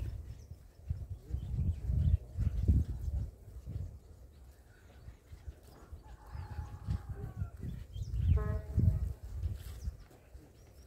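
Gusts of wind buffeting a phone microphone in uneven low rumbles, loudest a couple of seconds in and again near the end. A brief pitched animal call sounds about eight seconds in.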